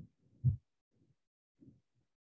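A few soft, low thumps, the loudest about half a second in, with fainter ones later.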